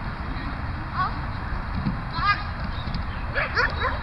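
Short, sharp calls from an agility dog barking and its handler calling commands during a run: one about a second in, a longer one near the middle and a quick run of four near the end, over a steady low rumble.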